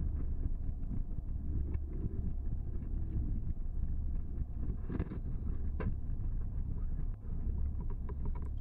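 Ford Mustang rolling across a rough, unpaved field, heard from inside the cabin: a steady low rumble with a few sharp knocks, about 2, 5 and 6 seconds in.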